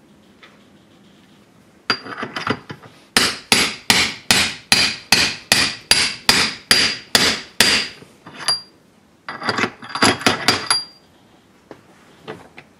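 Hammer striking a hex-shaft bearing punch set in a steel gear to drive its needle roller bearing, metal on metal with a short ring on each blow. A few light taps come first, then a steady run of about fourteen blows at roughly three a second, then a quick flurry of taps near the end.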